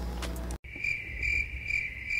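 Cricket chirping sound effect: a steady high trill that swells about twice a second, cut in abruptly about half a second in after a moment of room tone. It is the stock 'crickets' gag for an awkward silence.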